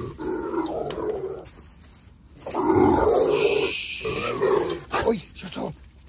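A Rottweiler growling and grumbling excitedly in greeting, in three rough bouts, with a short rustling hiss about three and a half seconds in.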